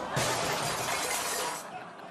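A loud crash with a breaking, clattering sound lasting about a second and a half, then fading: a cat falling through an open stairwell hatch onto the cluttered stairs below.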